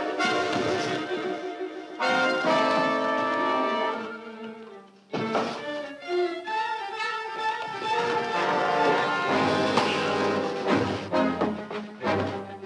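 Orchestral film score with brass and strings playing a dramatic action cue. It falls away just before five seconds in and comes back in suddenly.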